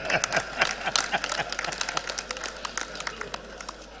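An audience applauding, many hands clapping densely at first and thinning out toward the end.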